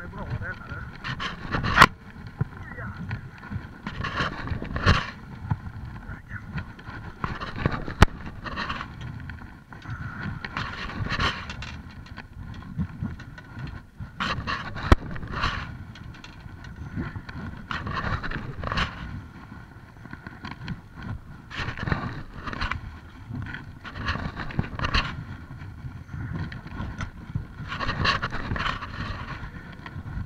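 Choppy waves slapping against the hull of a small boat, with wind buffeting the microphone and a few sharp knocks against the hull.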